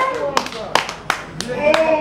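Scattered handclaps from a club audience, a few single claps at uneven intervals, as a held tone dies away; a man's voice starts again near the end.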